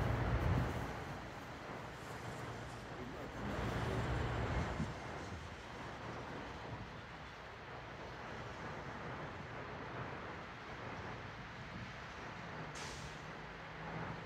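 Traffic on a street going by: one vehicle passing in the first second and another about four seconds in, over steady road noise.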